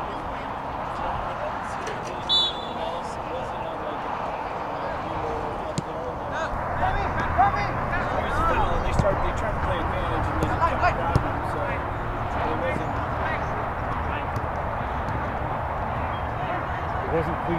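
Outdoor youth soccer match: a steady murmur of spectators' voices, with one short, loud referee's whistle blast about two seconds in as play restarts from the centre spot. From about six seconds in come scattered shouts and the thuds of the ball being kicked.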